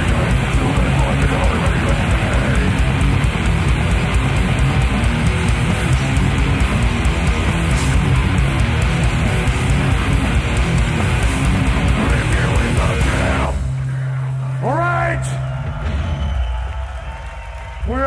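Loud live death metal from a three-piece band: distorted electric guitar, bass and drums, with vocals. The band stops abruptly about three-quarters of the way through at the song's end, leaving a steady low note ringing on for a couple of seconds.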